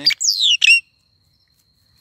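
A small black-and-yellow songbird gives a brief call: two quick, high whistled notes that fall sharply in pitch, within the first second, followed by silence.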